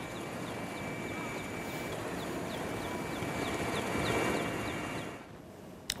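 Outdoor field-recording noise, a steady rush, with a run of short high chirps repeating about three times a second through the middle. It drops away suddenly about five seconds in.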